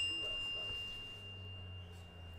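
The ring of a small metal bell dying away slowly: one clear high tone with fainter overtones above it, over a faint low hum.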